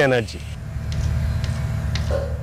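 A steady low rumble with a faint hum begins just after a man's voice trails off near the start.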